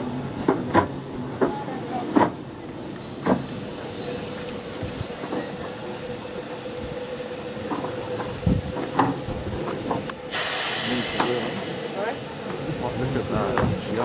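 Steam locomotive Whillan Beck, a 15-inch-gauge engine, standing in steam on a turntable, with scattered metallic clanks over a faint steady tone. About ten seconds in, a loud hiss of escaping steam starts suddenly and carries on.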